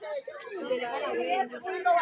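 Several people talking at once, their voices overlapping and indistinct.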